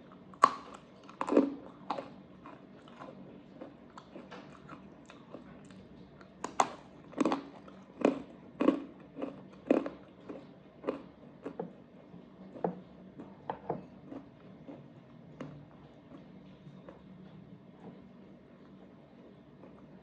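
Hard pretzel bitten and chewed close to the microphone: a series of sharp crunches. They come loudest and thickest between about six and ten seconds in, then thin out into softer chewing.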